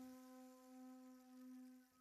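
Faint held low note of a zen flute, one steady tone that swells slightly and fades out near the end.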